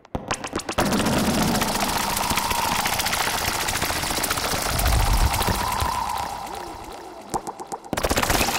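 Analog synthesizer patch of a Behringer 2600, Pro-1 and Studio Electronics Boomstar playing a dense noisy texture of rapid clicks with a wavering tone near 1 kHz. A heavy bass swell comes about five seconds in; the sound thins to scattered clicks near the end before surging back.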